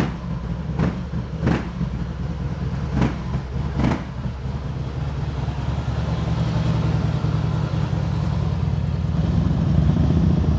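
Harley-Davidson Heritage Softail's V-twin engine running, with four short, sharp bursts in the first four seconds, then a steadier, slightly louder run as the bike pulls away.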